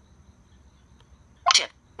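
Faint low room hum, then about a second and a half in the iPhone's VoiceOver screen-reader voice speaks one short word, "Tiếp" (Next), announcing the Next button it has been touched on.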